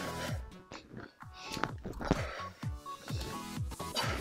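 Electronic background music with a steady beat.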